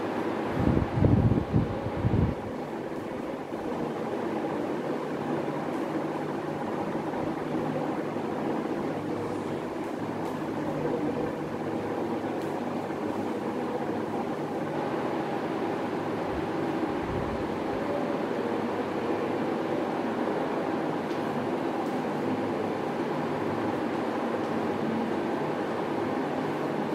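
A steady mechanical hum with several held tones, like a motor or fan running continuously. A few low thumps come about one to two seconds in, and a fainter one later.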